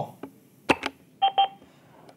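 Avaya 1416 desk phone: two quick button clicks as the Drop softkey is pressed, followed about half a second later by two short electronic beeps as a party is dropped from the conference call.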